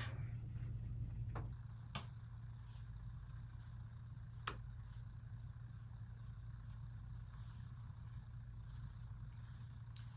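Chip brush bristles swishing in short repeated strokes, about three a second, as paint is worked off on a folded paper towel and dry-brushed across a painted tabletop. A few light knocks in the first two seconds, over a steady low hum.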